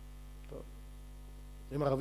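Steady low electrical mains hum from a microphone sound system during a pause in speech. A single short word comes about half a second in, and a man's speech starts again near the end.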